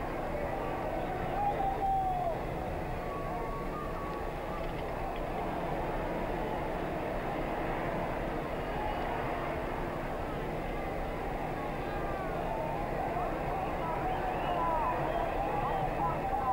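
Steady murmur of a stadium crowd on an old broadcast recording, with faint scattered calls rising out of it and a low steady hum underneath.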